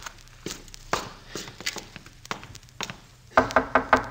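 Radio-drama sound effects: a few slow, scattered footsteps, then a quick, loud run of knocking on a door starting near the end.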